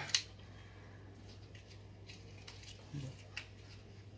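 Hands handling and opening a small black plastic accessory pack: one sharp click just after the start, then a few faint ticks and rustles.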